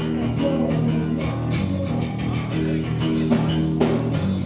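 Live rock band playing an instrumental stretch of a song: electric guitar and bass chords over a steady drum-kit beat, with no singing.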